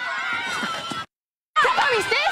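Several girls shrieking and yelling over one another in a scuffle, shrill overlapping voices. The sound cuts out completely for about half a second a second in, then comes back louder.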